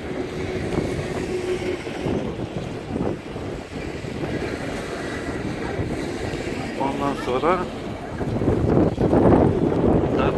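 Wind rumbling on the camera microphone over outdoor street noise. A voice speaks briefly about seven seconds in and again near the end.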